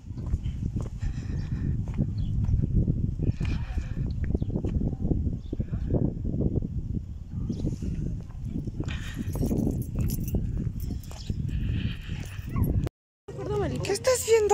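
Strong gusty wind buffeting the phone's microphone: a low rushing noise that rises and falls unevenly, cutting out briefly near the end.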